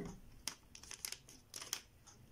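Faint rustling and a few short crinkles of a sheet of origami paper being handled and folded by hand.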